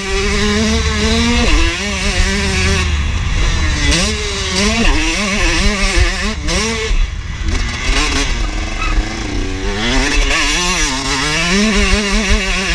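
KTM motocross bike engine revving up and down hard as the rider works the throttle and gears on a dirt track, its pitch rising and dropping every second or so. There is a deep rumble of wind on the microphone underneath.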